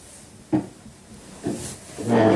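Handling noise on a phone's microphone: two short bumps and rustles, one about half a second in and one near the end, as the phone is moved and brushed by a knit sweater.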